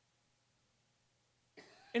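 Near silence with a faint steady hum. Near the end comes a short, faint throat sound from a man, just before he starts speaking again.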